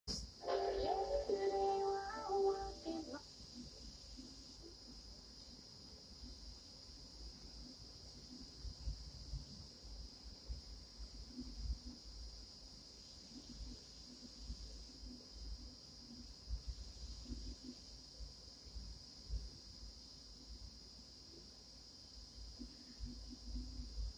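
Television playing a videotape over a blank blue screen: a short run of steady musical tones for the first few seconds, then faint steady hiss with low rumbles and thumps coming and going.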